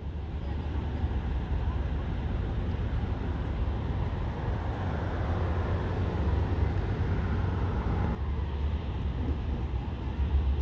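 Steady low outdoor rumble of distant vehicles and construction machinery running. The sound thins suddenly about eight seconds in.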